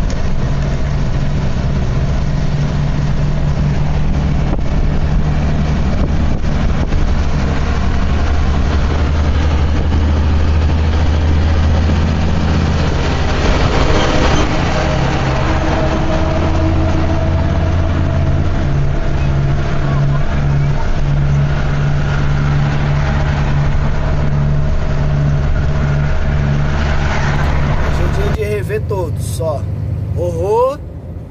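A truck's diesel engine droning steadily, heard from inside the cab while driving at road speed, with road noise; the engine note shifts in pitch about twelve seconds in and again around sixteen seconds as the revs change.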